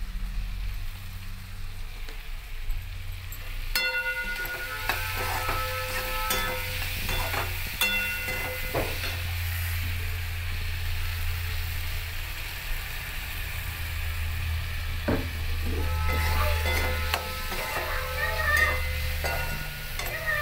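Chopped tomato masala sizzling as it fries in oil in a metal kadhai, with a slotted metal spoon stirring, scraping and clinking against the pan from about four seconds in.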